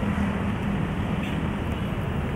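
Steady road traffic noise from passing cars and motorbikes, with a low steady hum underneath.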